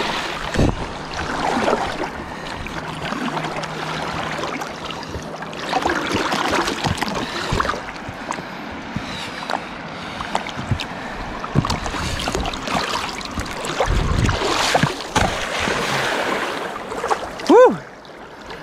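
River water sloshing and splashing around a floating hard plastic case as it is pushed under and bobs back up, over the steady rush of the river. A short vocal exclamation comes near the end.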